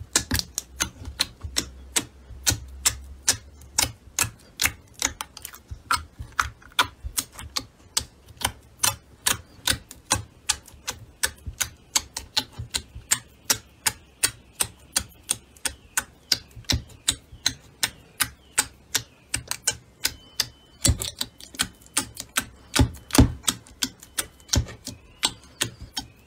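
Fingers poking and pressing into slime packed in a plastic compartment tray, giving a quick series of crisp clicks and pops, about two to three a second.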